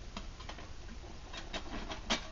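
Faint, light metallic clicks and ticks of a stainless steel camp pot shifting as it is seated on the top edges of a titanium hexagon wood stove, metal on metal. There are a few scattered clicks, with more of them close together in the last second.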